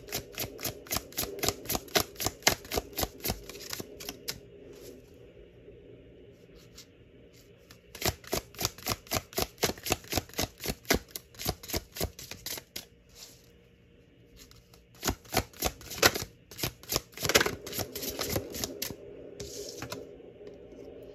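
Deck of tarot cards being shuffled by hand: runs of rapid card slaps, about seven a second, in three bursts with pauses of a few seconds between.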